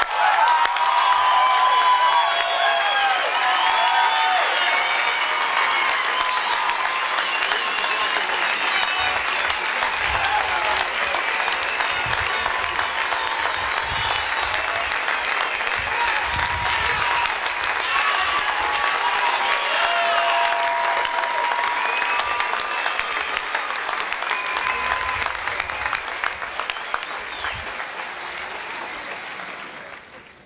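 Sustained applause from a large crowd, with voices calling out over the clapping. It fades away over the last few seconds.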